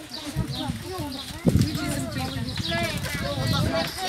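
Overlapping chatter of many children's and adults' voices talking at once, with a sharp knock about one and a half seconds in.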